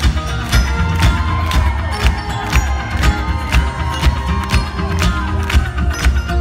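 Live rock band playing an instrumental passage: drums keep a steady beat under bass, electric guitar and keyboards, with cheering from the crowd around the recording.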